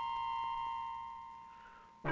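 A single held musical note from the song's accompaniment, one steady pure tone that fades away over the last second.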